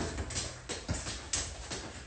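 Quick light touches of a soccer ball and sneaker taps and scuffs on a concrete floor, an irregular run of soft taps with a sharper knock about a second in.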